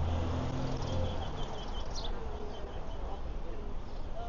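Street ambience: a small bird chirping in a string of short, high, repeated notes, over a low engine hum that fades out about a second and a half in.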